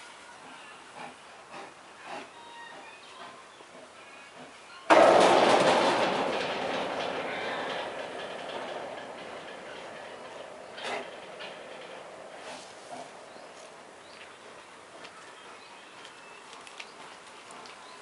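Brown bear handling a wooden plank: a few light knocks, then a loud crash about five seconds in that dies away slowly over several seconds.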